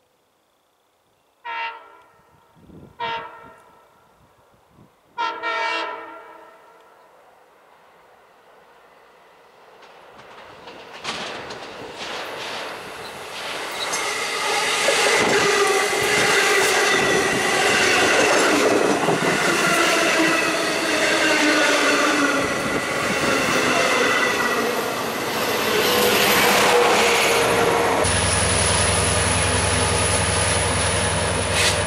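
Long Island Rail Road commuter train's horn sounding three blasts about a second and a half apart as it approaches a grade crossing, then the bilevel train passing close by, wheels clacking over the rail joints under a steady rush that builds from about ten seconds in. Near the end the sound changes abruptly to a steady low hum with a high whine from a diesel locomotive standing at the platform.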